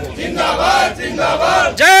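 A group of men shouting a political slogan together, several voices overlapping, followed near the end by a loud, drawn-out shout of "jai".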